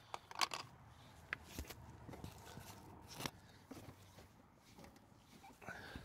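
A few faint, short clicks and rustles of hands handling the plastic at the back of a car headlight through a wheel-arch access hole.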